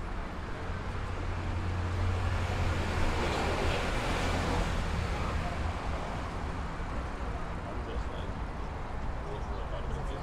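Street traffic ambience: a motor vehicle drives past on the street, its engine rumble and tyre noise building to a peak about four seconds in and then fading, over steady city background noise.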